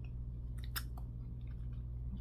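A few faint mouth clicks and lip sounds over a steady low hum.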